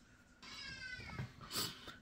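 A cat meowing once, faint: a single drawn-out call that falls slightly in pitch. It is followed by a short burst of noise about a second and a half in.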